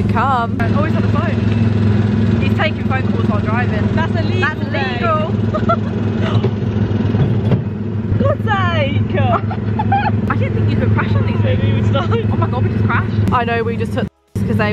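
Small ride car's engine running steadily, with excited voices laughing and squealing over it.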